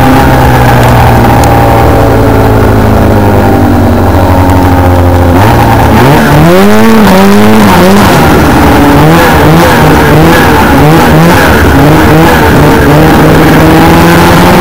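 1996 Arctic Cat ZR 600 snowmobile's two-stroke twin engine under way, loud and close. Its note falls off slowly as the sled slows, then revs sharply up about five seconds in and swings up and down with the throttle about once a second before holding a higher pitch near the end.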